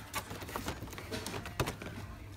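Plastic blister packs of action figures being handled and shifted on a shop shelf: a run of irregular clicks and crackles, with one sharper click about one and a half seconds in.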